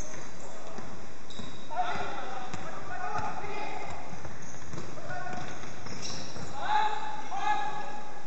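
Basketball dribbled on a hardwood gym floor, with players calling out to each other several times.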